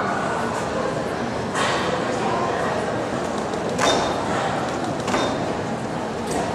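A gymnast's feet landing on a balance beam three times, the second landing the loudest, over a steady murmur of voices echoing in a large hall.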